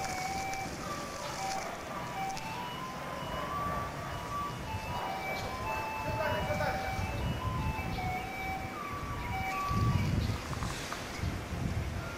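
A simple electronic chime melody of single clear notes stepping up and down, like a vehicle's jingle, over street noise. A low rumble swells about ten seconds in.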